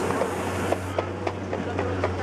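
Short hiss of a Boost Oxygen canister of canned oxygen being sprayed and breathed in, stopping about a second in.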